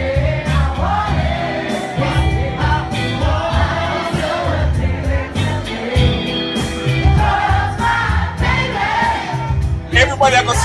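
A woman singing live into a microphone, backed by a band with a heavy, pulsing bass line.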